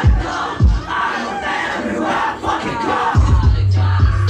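Live hip hop played loud through a club PA: deep bass kicks that drop in pitch, under shouted vocals. A held low bass note comes in about three seconds in.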